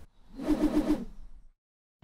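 Sound-effect sting for an animated title graphic: a soft pitched tone that pulses about four times in quick succession, then fades out.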